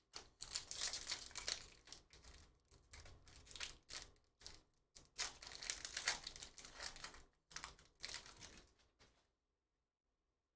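Foil wrapper of a Panini Prizm Premier League hobby pack crinkling and tearing as it is ripped open by hand, in several crackly bursts with short pauses between them.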